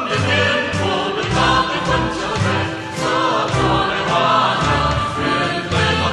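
A Vietnamese revolutionary song: a choir singing over orchestral accompaniment, with a regular bass pulse.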